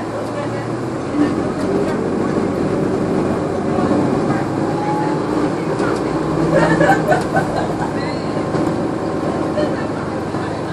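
Inside a NovaBus LFS hybrid city bus: the Cummins ISL9 diesel and Allison hybrid drive running steadily under road rumble and cabin rattles. Passengers talk in the background, loudest about two-thirds of the way through.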